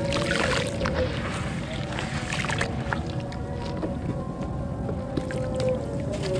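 Water sloshing and splashing in a basin as hands squeeze and crumble a wet clay chunk, with the busiest splashing in the first second. Background music with held notes runs underneath.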